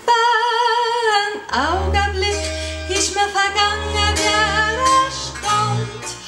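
Swiss folk string trio playing an instrumental passage: struck hammered-dulcimer notes over low double-bass notes. It opens with one long wavering note held for about a second and a half.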